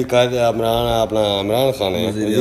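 A man's voice chanting or reciting in a drawn-out, sing-song way, holding each pitch before it bends, with no clear words.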